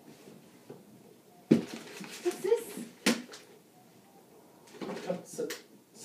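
Handling of wrapped presents and toy boxes: a sharp knock, then rustling, then a second knock, with short wordless voice sounds in between.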